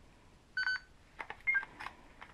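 Handheld camcorder's electronic beeps as it is operated: one beep about half a second in, then a short two-note falling beep about a second later, with small plastic clicks from its buttons and screen being handled in gloved hands.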